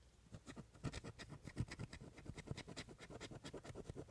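A coin scratching the coating off a paper scratch-off lottery ticket in quick, short, repeated strokes, several a second.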